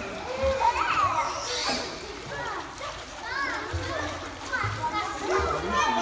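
Many children's voices calling and chattering over one another in a tiled indoor pool hall, with some water splashing beneath them.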